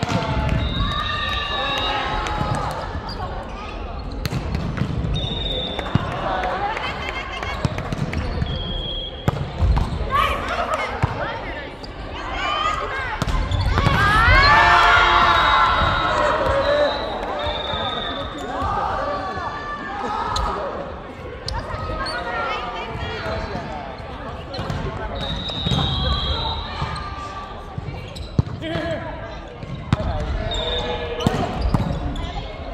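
Volleyball rally on a hardwood gym court: the ball struck by hands and forearms in sharp slaps, sneakers squeaking briefly on the floor, and players calling out to each other, with the loudest shouting about halfway through. The hall echoes.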